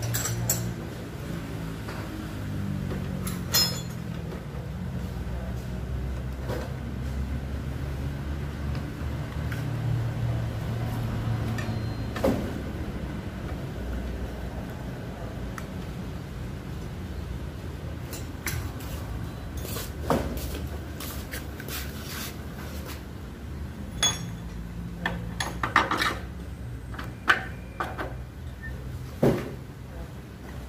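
Scattered metallic clicks and knocks of hand work on a motorcycle's front wheel and brake parts, thickest over the last few seconds, over a steady low hum.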